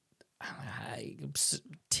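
A person's audible breath in a pause between words: a soft, breathy noise lasting about a second, then a brief sharp hiss just before talking resumes.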